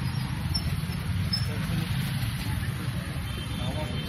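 Busy street noise: a steady low rumble with faint voices of a crowd mixed in.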